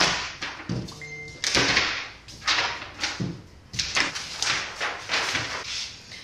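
Paper prints being pulled down and handled: a run of short rustling, crumpling bursts, roughly one every half second, with a brief steady tone about a second in.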